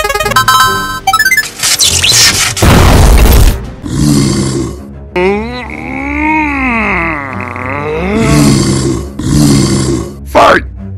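Cartoon sound effects over background music: a quick run of rising blips in the first second or so, a loud whooshing crash around three seconds in, then a long drawn-out groan-like voice whose pitch rises and falls.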